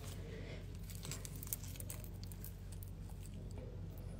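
Small clicks and rustles of a gold pendant and its paper price tag being picked up and handled, densest around the middle with one sharper click, over a steady low hum.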